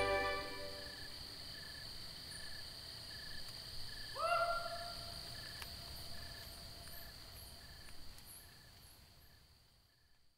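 The last notes of a band fade in the first second and leave a faint outdoor nature recording: insects chirping in an even rhythm over a steady high drone. About four seconds in there is one louder animal call that rises and then holds. Everything fades to silence near the end.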